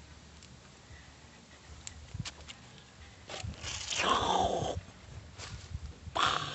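A loud call about a second long, falling in pitch, a little past the middle, after a few faint clicks.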